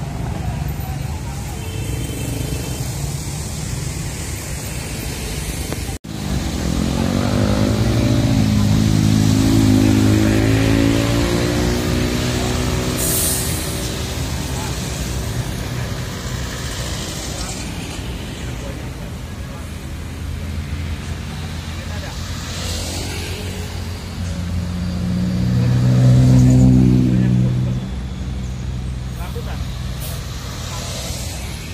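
Diesel coach engine running at the kerb, revved twice: a rising, held rev from about six seconds in, and a louder one near the end.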